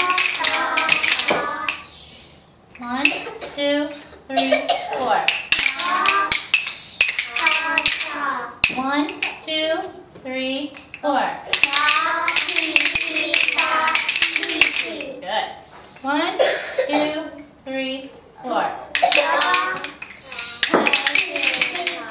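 A group of young children chanting together while tapping wooden rhythm sticks, with sharp wooden clicks scattered among the voices.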